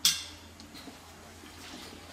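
A brief sharp, high sound at the very start that fades within a fraction of a second, then quiet workshop room tone with a faint low hum.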